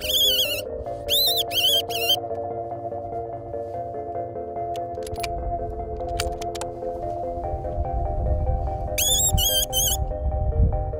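Fox caller sounding a high-pitched squealing distress call in quick groups of short squeals, one group in the first two seconds and another near the end, over background music with long held tones. A low rumble builds in the second half.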